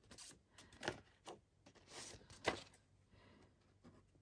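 Scissors snipping through a sheet of marbled paper: about five short, faint cuts in the first three seconds, the loudest about two and a half seconds in.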